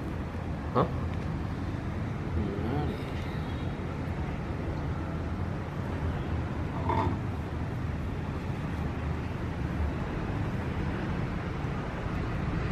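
Steady low background noise, with a couple of brief faint voice sounds about a second in and about seven seconds in.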